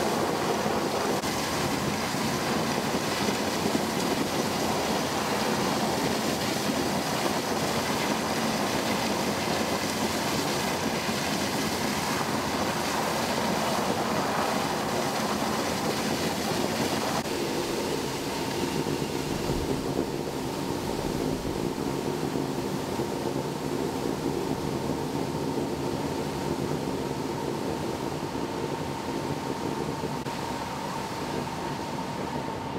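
An uncontrolled jet of water from a sheared high-pressure fire hydrant, a steady loud rushing spray. About halfway through it turns duller and a little quieter.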